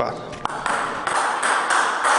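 Table tennis ball being hit in a fast backhand topspin rally: quick, regular clicks of the ball on the racket and the table, starting about half a second in.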